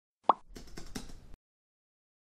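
Intro sound effect: a single short pop, then about a second of faint, rapid clicks like keyboard typing.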